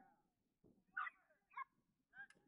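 Near silence, broken by two short, faint calls: one about a second in and a shorter one half a second later.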